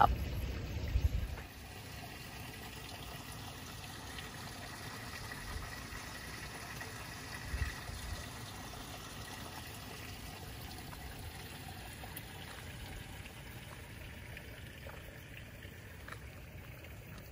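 Faint, steady trickle of running water, with a short soft low bump a little past halfway.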